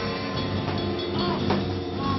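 Post-hardcore band playing live and loud: distorted electric guitar and drums in a dense, noisy wall of sound, with a few sharp drum hits standing out.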